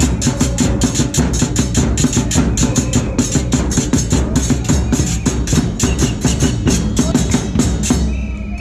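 Supporters' drums, a bass drum and snare drums, beaten together in a fast, steady rhythm of about seven strikes a second.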